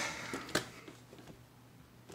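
Faint handling noises from a robot vacuum being moved, with one sharp click about half a second in.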